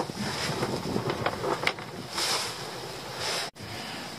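Wind on the microphone with rustling and a few light knocks from movement close by. The sound cuts out for an instant near the end.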